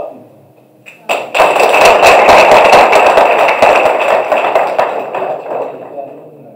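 Audience applauding, rising about a second in and dying away near the end.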